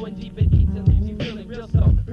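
Hip hop track played from cassette tape: a beat with heavy kick drums, with rapped vocals over it.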